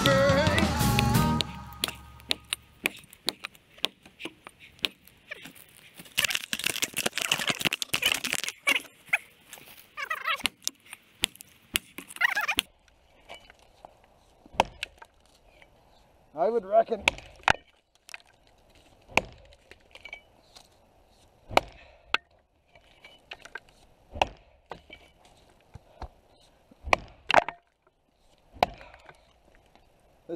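A cruiser double-bit axe chopping into the trunk of a dead arbutus tree: sharp wooden chops at uneven intervals, mostly a second or two apart and coming faster for a stretch near the middle. A song ends about a second or two in.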